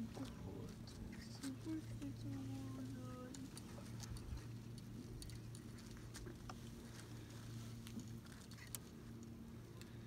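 Quiet ambience aboard a small boat: a faint steady low hum, a few light clicks, and a brief faint voice about two to three seconds in.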